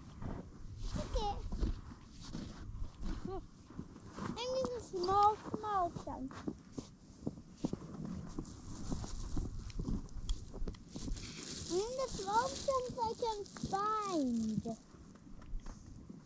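A child's high voice making wordless calls and hums in several short spells. Under it, boots crunch and scrape on snow-covered ice.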